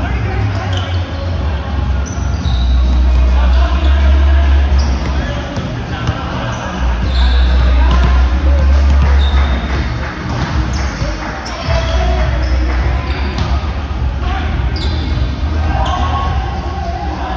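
Indoor volleyball court ambience in a large hall: a ball bouncing and knocking on the hardwood floor, short high squeaks of sneakers on the court, and indistinct players' chatter, over a low rumble that swells and fades in long stretches.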